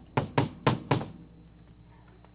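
Bass drum of a Pearl Export kit with Evans heads, kicked four times in quick succession within about the first second by a DW 7000 double pedal used as a single pedal.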